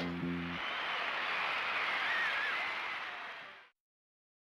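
A song ends on a last held low note, then audience applause follows; it fades and cuts off to silence shortly before the end.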